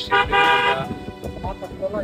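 A vehicle horn sounds one steady honk of just under a second, starting right at the start.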